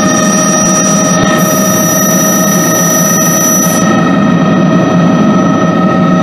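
Bell 206 JetRanger helicopter's turbine and rotor heard from inside the cabin, running steadily and loudly with several high, even whining tones over the noise.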